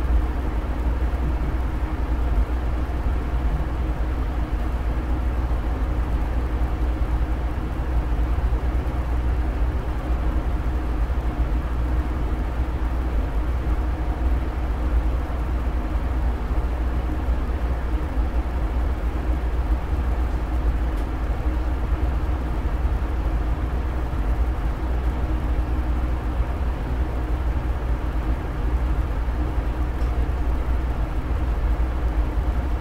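A steady low rumble with a constant hum and faint steady tones above it, unchanging throughout.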